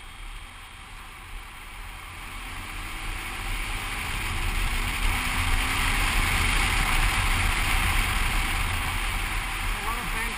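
Sidecar motorcycle riding at speed: wind rushing over the helmet-mounted microphone with the engine's low drone under it. The noise swells over the first few seconds as the rig speeds up, with a faint rising engine note, and then holds loud.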